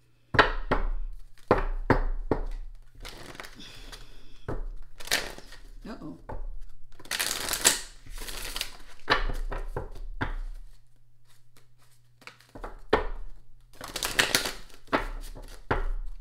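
Tarot cards being shuffled and handled: a run of crisp clicks and slaps, with longer papery shuffling bursts a few seconds apart.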